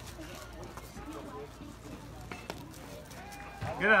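Faint background voices of spectators with steady outdoor hum, and a faint knock about two and a half seconds in. Near the end a nearby spectator shouts "Good!"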